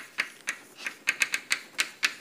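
Chalk writing on a blackboard: a quick, irregular run of sharp taps, about five a second, as the chalk strikes the board.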